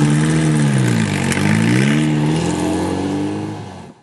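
Race car engine revving: its pitch drops over the first second, climbs again, holds, then fades out near the end.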